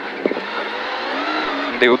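Rally car engine heard from inside the cabin, running under load with its note rising over the second half as the car picks up speed out of a corner, over steady tyre and road noise.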